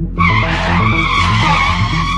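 Tyre screech of a vehicle skidding. It starts abruptly just after the beginning and holds loud and steady, over throbbing background music.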